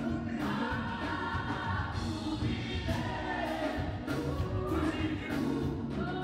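A gospel vocal group of men and women singing together into microphones, over instrumental backing with a steady low bass.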